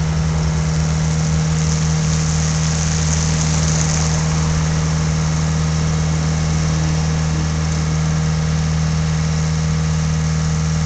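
A heavy engine idling steadily: a deep, even hum that holds at one pitch and level.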